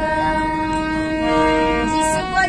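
A train horn sounding one long, steady blast, with a second tone joining partway through.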